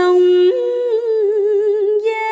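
A woman's voice holding one long sustained note of vọng cổ singing in the long-breath (hơi dài) style. The pitch steps up about half a second in and then wavers with a slow vibrato.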